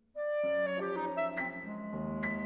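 Clarinet and piano playing contemporary classical chamber music: after a brief pause, the music comes in suddenly with a held clarinet note, then a quick run of changing notes over sustained piano notes.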